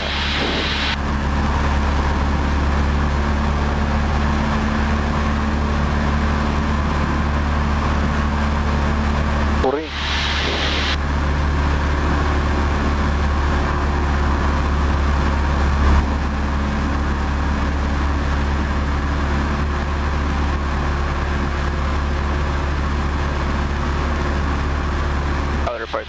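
Cessna 172P's four-cylinder Lycoming engine and propeller droning steadily at cruise power in level flight, with a brief dip in the sound about ten seconds in.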